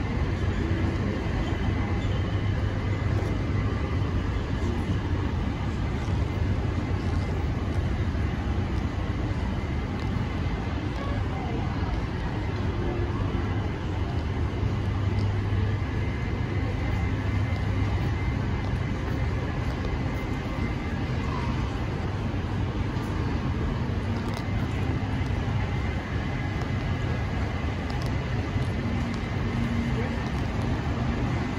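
Steady low drone of city traffic, even throughout with no distinct events.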